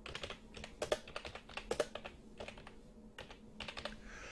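Computer keyboard being typed on: a quick, irregular run of faint key clicks as a short name is entered.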